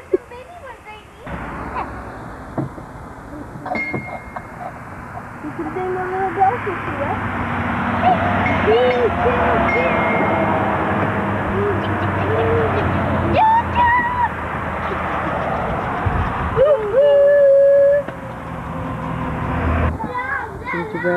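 A small kiddie train ride running: a low steady mechanical hum and rushing noise builds up over the first few seconds, with children's voices over it. Near the end there is one loud steady tone about a second long.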